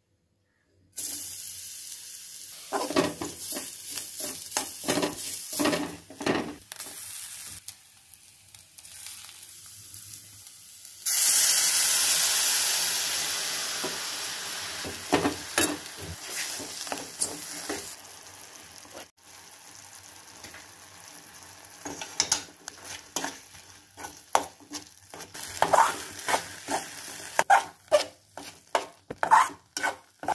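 Food frying and sizzling in ghee in a metal pan, with repeated scrapes of a metal ladle stirring against the pan. About a third of the way in, a loud burst of sizzling starts suddenly as something is added to the hot pan, then fades over several seconds. The stirring scrapes come quicker near the end as the moong dal, jaggery and coconut filling cooks down.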